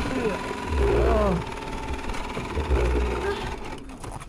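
A car engine running with a low rumble, with indistinct voices over it.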